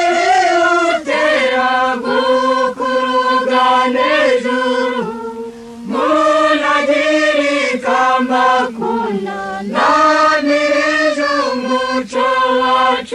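Choir singing a Kinyarwanda song in long, flowing phrases. About five seconds in it briefly thins to a single held note, then the full voices come back in.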